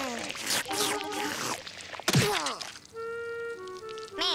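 Cartoon soundtrack: a wordless cartoon-voice cry of dismay, a quick falling comic sound effect about two seconds in, then held music notes.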